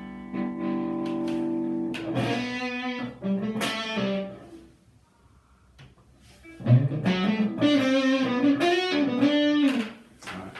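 Les Paul-style electric guitar played through an amp with overdrive for singing sustain. A held chord rings for about two seconds, then a few single notes. After a short pause comes a phrase of long sustained notes, with a bend and vibrato near the end.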